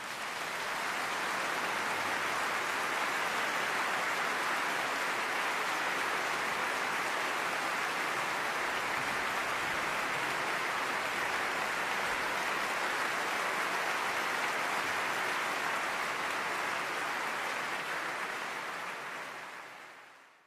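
Audience applause, steady and sustained, swelling in over the first second and fading out near the end.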